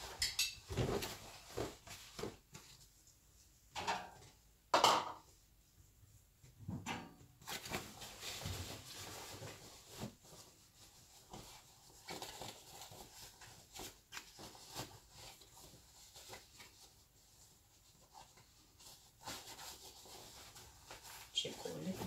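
Laundry being handled and loaded into a front-loading washing machine: fabric rustling with scattered knocks and clinks, the loudest about five seconds in.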